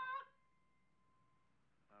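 A young man's long sung note, held at one pitch, cuts off about a quarter second in. Near silence follows until a man starts speaking at the very end.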